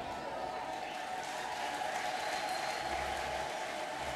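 A large audience applauding in a hall, a steady, fairly quiet patter of many hands.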